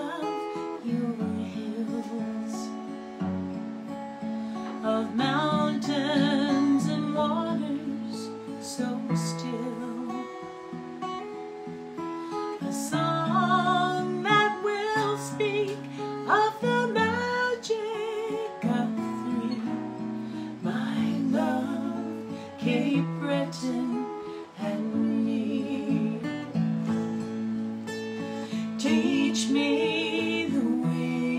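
Acoustic guitar accompanying a woman singing a slow song, her held notes wavering in pitch.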